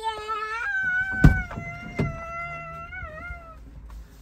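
A child's high voice holding long, steady sung notes, the pitch bending near the end. A sharp click about a second in, from the camper van's door latch as the door is opened, and a lighter click a second later.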